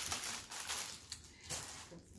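Pastry piping bags from a cake-decorating kit rustling and crinkling as they are handled.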